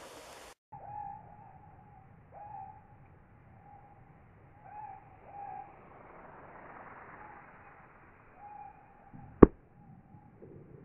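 A bird's short hooting calls, repeated every second or so, then near the end a single sharp smack, the loudest sound: a 20-inch carbon crossbow bolt striking the target bag.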